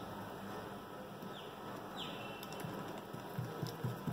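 Faint small taps and clicks of a screwdriver working the screws of a hard disk's circuit board, growing more frequent near the end, over a steady low hum.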